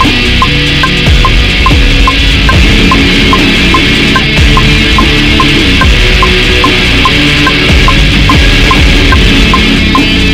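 Electric guitar through a Big Muff-style fuzz pedal, playing held, heavily distorted chords. A metronome click ticks about two and a half times a second, with a higher tick on every fourth beat.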